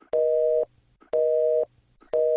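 Telephone busy signal: a steady two-note tone beeping twice, about half a second on and half a second off, the sign that the call did not connect or that the line is engaged.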